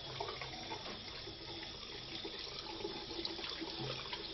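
Water running steadily from a tap into a sink.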